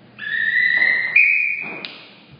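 Referee's whistle blown in a two-tone blast: a lower note held about a second that steps up to a higher note and cuts off sharply. It is the chief judge's call for the corner judges to raise their flags for the kata decision.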